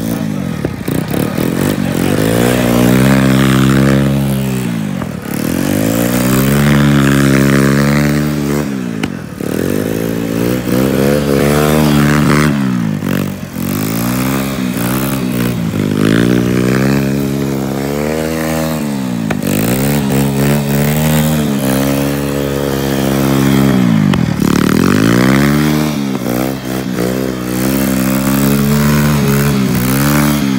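Honda ATC three-wheeler's single-cylinder engine revving up and dropping back again and again, every few seconds, as the rider accelerates and lets off.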